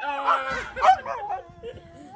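Huskies 'talking' while play-fighting: wavering, pitch-bending yowls, loudest at the start and again just before a second in, then tailing off.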